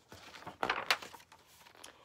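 A page of a picture book being turned: a short paper rustle and swish, loudest a little under a second in, then fading.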